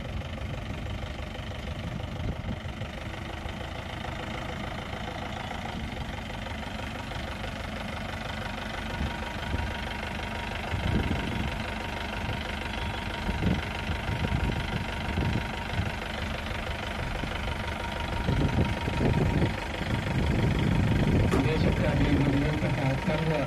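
Open jeep's engine idling steadily, growing louder near the end.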